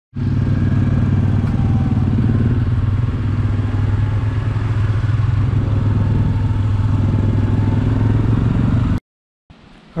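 ATV engine running at a steady speed while riding, picked up from a camera mounted on the quad; it holds an even pitch with no revving, then cuts off suddenly about nine seconds in.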